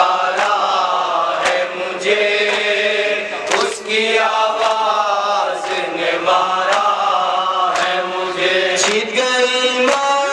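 Male voices chanting an Urdu noha, a Shia mourning lament, in long drawn-out sung lines. A sharp beat falls about once a second under the chant.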